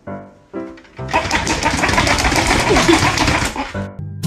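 A few notes of music, then a loud, rapid mechanical rattle lasting about three seconds, like a small motor running, that cuts off just before the next music.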